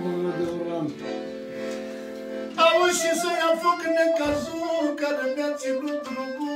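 Piano accordion playing: held chords at first, then from about two and a half seconds in a louder, quicker run of melody.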